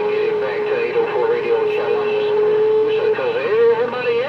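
Galaxy CB radio receiving a signal: a steady whistling tone plays through the speaker under faint, garbled, unintelligible voices. About three seconds in, the tone wavers and bends.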